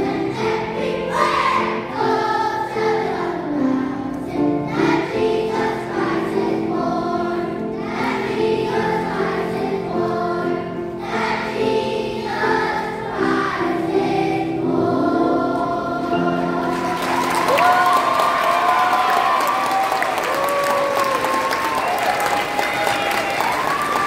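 Children's choir singing with grand piano accompaniment. The song ends about two-thirds of the way through and the audience breaks into applause and cheers.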